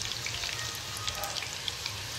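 Potato fries deep-frying in a pan of oil: a steady sizzle with small pops and crackles.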